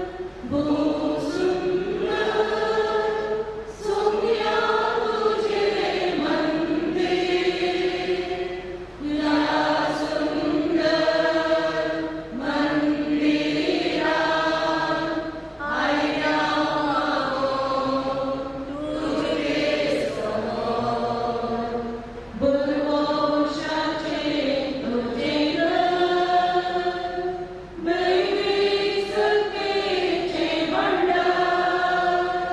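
A choir singing a slow hymn in long held phrases, each a few seconds long, with brief pauses for breath between them.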